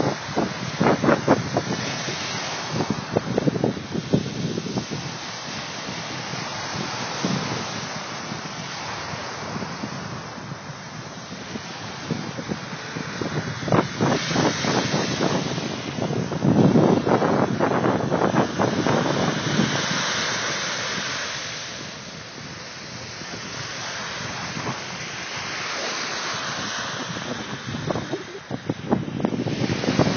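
Waves washing onto a beach, swelling and easing in surges, with wind buffeting the phone's microphone.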